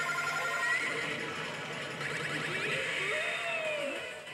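Daito Giken Yoshimune 3 pachislot machine playing its electronic effects and music during its G Break bonus feature: a steady wash of sound with several gliding tones.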